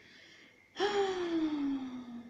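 A woman's breathy, drawn-out vocal sigh about a second in, falling steadily in pitch for about a second and a half.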